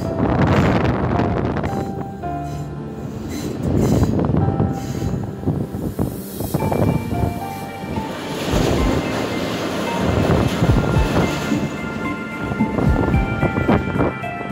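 A heritage diesel train running, heard from inside a carriage at an open window: steady rumble and rail clatter, with steady tones that shift in pitch over it.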